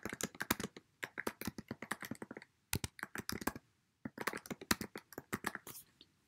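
Typing on a computer keyboard: quick runs of key clicks broken by short pauses, as a phrase is typed out.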